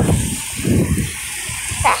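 Wind buffeting the phone's microphone in irregular low rumbling gusts, with a short spoken 'tá' near the end.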